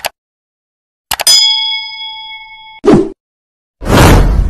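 Editing sound effects for a subscribe-button animation: a mouse click, then a bell-like notification ding that rings for about a second and a half and cuts off abruptly. A short swish follows, then a loud whoosh-and-boom effect begins near the end.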